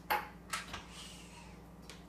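Metal lid of a Breville Fast Slow Pro multicooker being set down onto the cooker: two light clicks about half a second apart, then a faint scrape as it settles into place.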